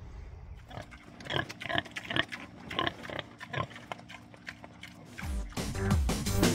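Pigs grunting at a feed trough over soft background music. Louder music comes in about five seconds in.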